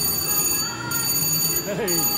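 VGT Crazy Cherry Jubilee slot machine playing its electronic ringing and chiming as its reels spin during a red spin bonus, with a man's "Hey" near the end.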